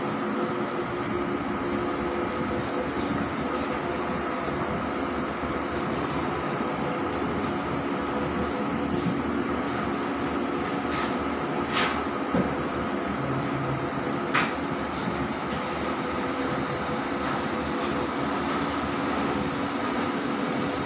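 Large-format inkjet flex-banner printer running while it prints, a steady mechanical hum from its carriage drive and fans, with three sharp clicks around the middle.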